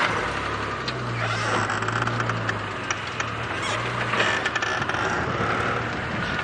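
Open safari game-drive vehicle moving off along a dirt track: its engine runs with a steady low hum, with road noise and body rattle over it.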